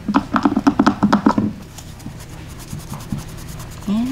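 A nail wipe soaked in cleanser is scrubbed briskly over cured gel nails to take off the sticky layer the top coat leaves. It makes a quick run of rubbing strokes for about a second and a half, then goes quieter with only a few faint ticks.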